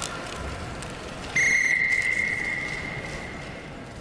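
A single high, steady whistle tone starting sharply about a second in, then fading away over a couple of seconds in the echo of a large indoor hall, over low arena hubbub.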